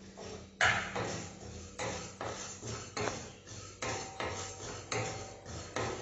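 Wooden spatula stirring spices in a stainless steel kadai, knocking against the pan about two or three times a second.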